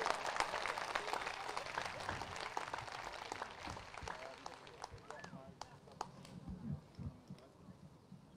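Crowd applauding, dying away over the first few seconds, with a few faint voices.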